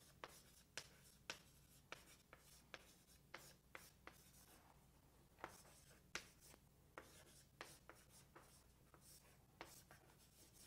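Faint writing on a lecture board: irregular short taps and scratches of the writing stroke, a couple each second, as a word problem is written out.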